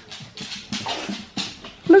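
Excited pet dogs making a string of short noisy sounds, with no clear barks.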